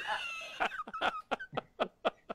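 Laughter over a video call: a high, squealing start, then quick breathy bursts of giggling, about five a second.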